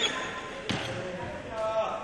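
Sharp knocks on a badminton court, one right at the start and another under a second later, ringing in a large sports hall. A brief pitched squeak follows near the end.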